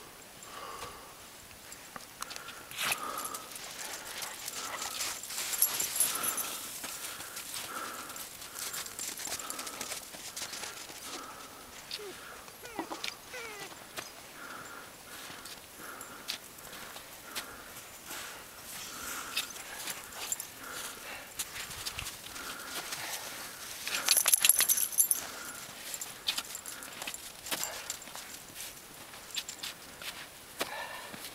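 Boots and crutch tips crunching and scraping on firm, packed snow on a steep climb, with hard breathing about once a second. A louder flurry of crunching comes about 24 seconds in.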